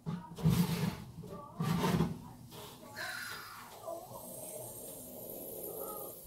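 Oven gloves handling a hot baking tray as it is lifted out of the oven: two muffled bumps and rustles close to the microphone in the first two seconds, then a faint steady hiss.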